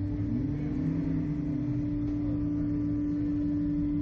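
Slingshot ride machinery running while the capsule waits to launch: a steady one-pitch hum over a low rumble.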